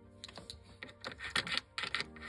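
Light, irregular clicks and taps of small plastic toys and toy furniture being handled and set down, over soft background music with steady held notes.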